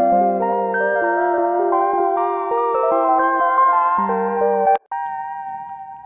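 Playback of a MIDI track made by Pro Tools' audio-to-MIDI conversion (Polyphonic Sustain), played by a software keyboard instrument: a dense stack of held notes shifting pitch step by step. The conversion comes out imperfect, "definitely not perfect". The notes cut off about five seconds in, leaving a fainter held note.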